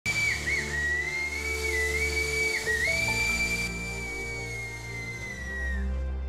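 Steam locomotive whistle blowing one long, high blast, its pitch dipping briefly a few times early on and sagging as it dies away near the end, over soundtrack music.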